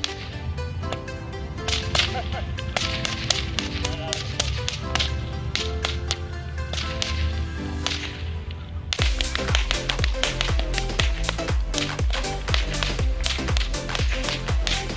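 Repeated sharp whip cracks over upbeat background music. About nine seconds in, the music switches to a heavier beat.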